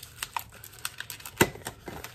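Inflated latex modelling balloon being handled and twisted into a loop: scattered short rubbing squeaks and ticks as fingers grip and bend the rubber, the loudest about one and a half seconds in.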